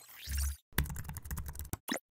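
Sound-effect computer-keyboard typing: a quick run of key clicks, then one separate click near the end. It is preceded by a short swoosh with a deep thud.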